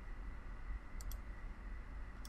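Two quick computer-mouse clicks about a second in, over faint steady room noise.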